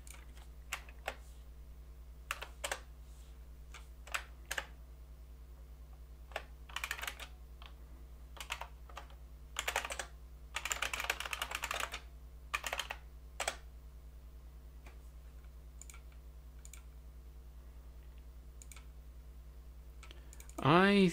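Computer keyboard typing: scattered single keystrokes, then two quick runs of typing in the middle, thinning out to occasional clicks over a faint steady low hum.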